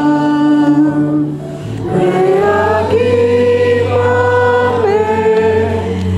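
A hymn sung by two women on microphones, with the congregation singing along, over sustained low accompanying notes. A long held note ends about a second in, and after a short breath a new phrase begins.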